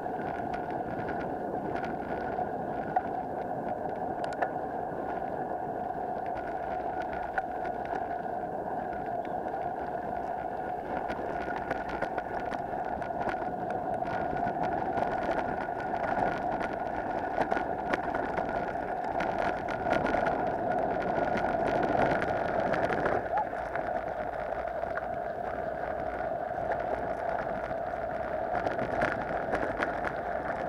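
Mountain bike riding over a rough dirt trail: a steady rolling rumble and hum with frequent sharp knocks and rattles from bumps.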